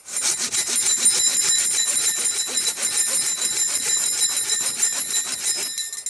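Silky Gomboy 240 folding pull saw cutting through a birch log, fast even strokes rasping through the wood. It starts at once and stops just before the end.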